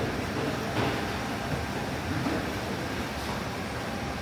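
Steady, even background noise of a factory test floor with rows of 3D printers with CFS multi-material units running, with no distinct clicks or tones.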